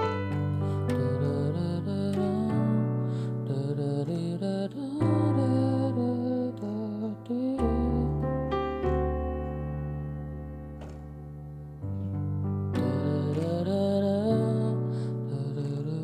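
Piano playing a slow verse in G major, with a melody line over sustained chords. The chords move from Gmaj7 through D11 to Bm7, and the left-hand bass changes every two to three seconds.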